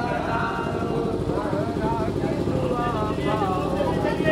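Many men's voices chanting a nauha, a Muharram mourning lament, together in a slow melodic line, over a steady rumble of a large crowd.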